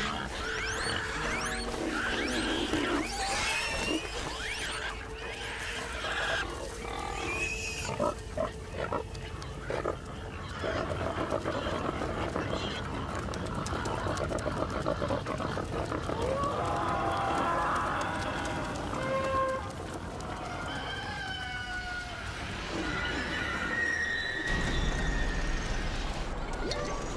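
Pigs grunting and squealing: a long run of varied calls, rising and falling in pitch.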